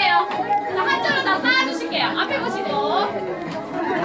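A group of people talking over one another at the same time, a busy overlapping chatter of several voices.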